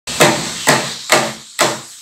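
Small hand frame drum struck by hand, four even beats about two a second, each sounding sharply and dying away quickly.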